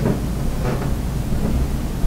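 A steady low rumble of background noise with nothing distinct over it.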